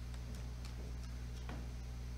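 Steady low electrical hum with a few faint, irregular clicks from a laptop's keys or trackpad being worked, the clearest about one and a half seconds in.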